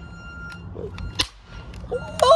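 Toy cap-gun rifle being worked, giving a faint click about half a second in and a louder sharp snap a little past one second.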